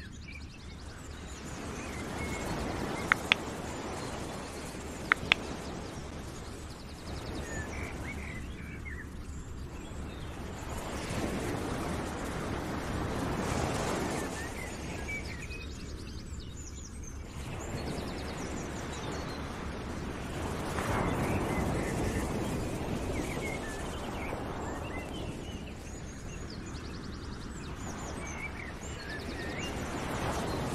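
Outdoor nature ambience: a rushing noise that swells and fades every few seconds, with small birds chirping. Two quick pairs of sharp clicks a few seconds in are the loudest sounds.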